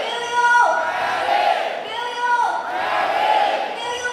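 Concert crowd shouting a chant in call and response with a singer, loud and rhythmic, over a repeating two-note tone that steps down in pitch about every two seconds.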